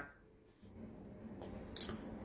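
Faint handling noise of a KJWorks CZ P09 airsoft pistol with a plastic frame, rustling in the hands as it is turned over, with one short sharp click near the end.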